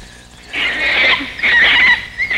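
Shrill, high-pitched squealing cries that start about half a second in and warble up and down.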